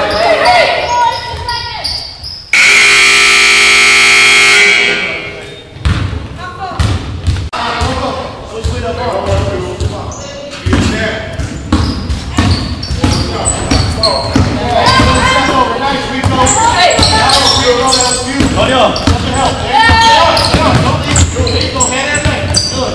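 Gym scoreboard horn sounding for about two seconds, a loud steady tone, as the game clock runs out. Around it, voices echoing in the gym and a basketball bouncing on the hardwood.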